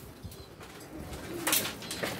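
Domestic pigeons cooing in a loft, with a brief sharp noise about a second and a half in.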